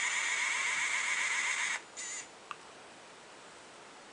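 3D pen's filament-feed motor whirring with a steady high whine as it pushes out plastic filament; it stops a little under two seconds in, whirs again briefly, and a faint click follows.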